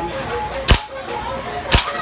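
Two sharp pops about a second apart from a compressed-air rifle, fired at balloon targets in a shooting game.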